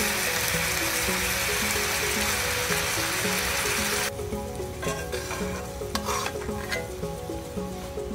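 Bhetki fillets sizzling in lemon-butter sauce in a cast-iron skillet: a steady, dense hiss that cuts off abruptly about four seconds in. Light background music plays throughout.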